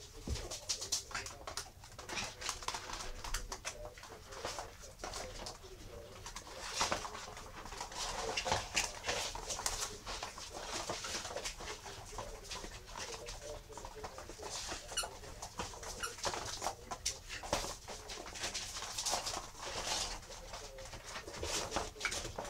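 Eight-week-old miniature schnauzer puppies playing: small puppy vocal noises mixed with many short clicks and scuffles of paws on the hard floor.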